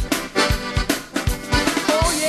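Zydeco band music: piano accordion playing over a steady drum beat with bass drum hits about three times a second.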